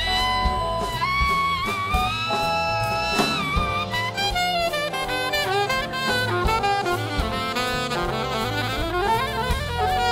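Alto saxophone playing a jazz solo over big band accompaniment: a long held note bent upward about a second in, then quick runs of notes, with a climbing run near the end.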